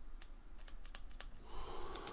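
A quick run of light clicks and taps, about a dozen in the first second or so, as a handheld smartphone gimbal is turned over and gripped in the hands.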